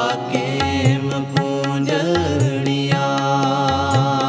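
Sikh Gurbani kirtan: a man's voice sings a drawn-out melodic line over the held tones of harmoniums. Tabla strokes keep a regular beat, with the low bass drum sliding in pitch.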